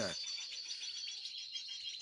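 European goldfinches twittering in an aviary: a fast, unbroken chatter of high chirps with a thin steady whistle running through it.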